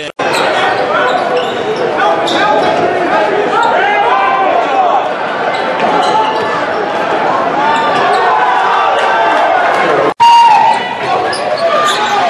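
Court sound of a live college basketball game: a ball dribbling on hardwood, sneakers squeaking and voices in the crowd, in a large echoing gym. About ten seconds in, the sound cuts out for a moment and picks up again at another game.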